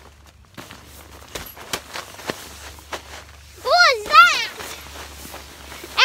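Scattered light knocks and rustles of children scuffling on an inflatable's floor, then two loud, high-pitched squeals from a child, rising and falling, about four seconds in.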